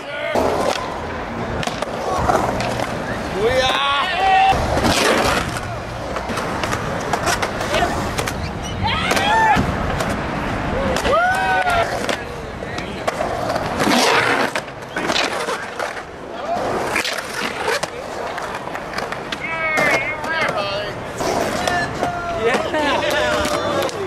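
Skateboard wheels rolling and carving on a concrete bowl, broken by sharp knocks and clacks of boards hitting the concrete. Voices shout out several times over it.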